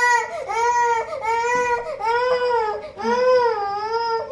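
Young child crying hard: a string of wails about a second each, rising and falling in pitch, one after another. The child is protesting being made to take a nap.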